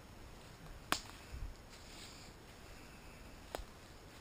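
Flashlight switch clicked twice, a sharp click about a second in and a fainter one near the end, with a soft thump between them over a faint hiss; the flashlight's batteries need changing.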